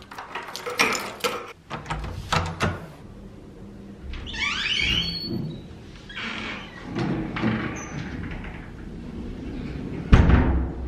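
Keys jangling and a door lock clicking as a key is turned in it, a quick run of metallic clicks over the first few seconds. About halfway through comes a brief high squeak, followed by softer knocks and footsteps.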